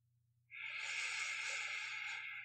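One long, soft breathy exhale from a man's voice, starting about half a second in and lasting a couple of seconds.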